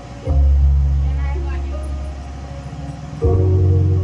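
Music played loud through a tractor-mounted speaker system, with deep sustained bass notes that hit about a quarter-second in and again just after three seconds, each slowly fading, under higher melody notes.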